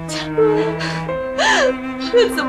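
A woman crying, gasping and sobbing out words, over slow, sad background music of long held notes.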